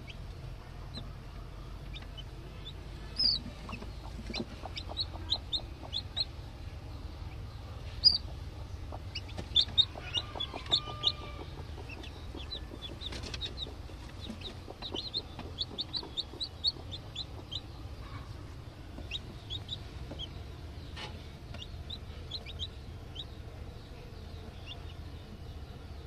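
Newly hatched chicks peeping in runs of short, high cheeps, busiest through the middle, with the brooding hen clucking low.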